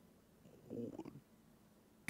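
Near silence, broken once by a faint, brief vocal murmur from a man about three quarters of a second in.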